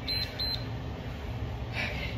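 Interval workout timer giving two short high beeps about a third of a second apart, marking a change of Tabata interval. A brief hiss follows near the end over a steady low hum.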